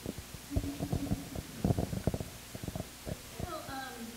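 Handling noise from a handheld microphone: a rapid run of dull low bumps and rubs lasting about two and a half seconds, then a voice starting near the end.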